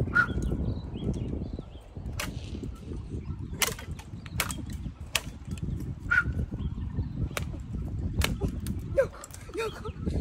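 Dry twigs and branches snapping and knocking as people climb through a bare tree: a dozen or so irregular sharp cracks over a continuous low rumble.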